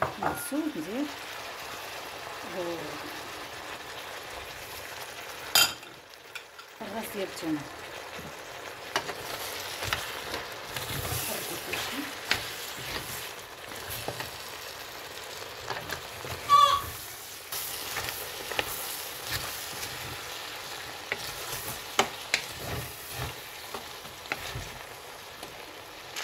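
Onions, lentils and spices sizzling in oil in a steel pressure-cooker pot while a hand stirs them, with scattered clicks against the pot. There is a sharp knock about five seconds in and a brief squeak about two-thirds of the way through.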